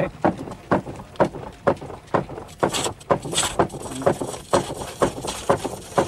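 Old line-shaft, belt-driven elliptical lathe running, with a rhythmic knocking about twice a second as the faceplate swings the oval frame out of round past the hand-held cutting tool.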